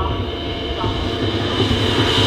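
A steady low rumbling drone in a marching band's field show, with faint held tones above it, growing a little louder toward the end.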